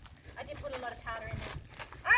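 Quiet, indistinct speech over a low rumble.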